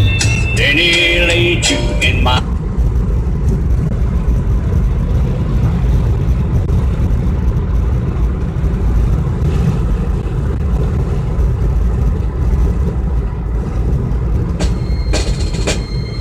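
Steady low rumble of a car's road and engine noise inside the moving cabin, with music and a brief voice that stop about two and a half seconds in. New music or radio-style talk starts near the end.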